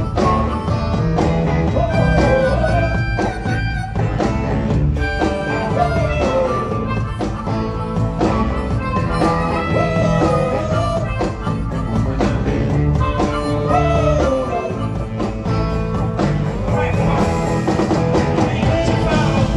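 Live rock band playing a blues-tinged groove, with a harmonica solo played into a vocal microphone over electric guitars and drums; the harmonica notes bend up and down.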